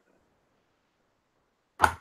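Near silence for most of it, then one short, sharp burst of noise near the end.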